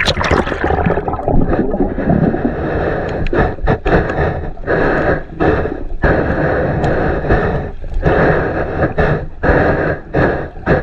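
Water splashing as an action camera goes under the surface, then the muffled rushing and gurgling of water against the submerged camera, cutting in and out several times.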